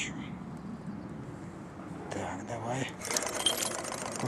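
Wood-fired hot-air Stirling engine running with a rapid mechanical clatter, which turns louder and busier about three seconds in as it takes up the load of the weight on its thread.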